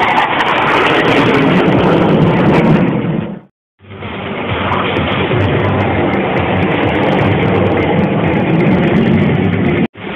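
Jet engine noise from a nine-ship formation of BAE Hawk jet trainers flying overhead: a loud, steady rush that breaks off for a moment a little over three seconds in and resumes.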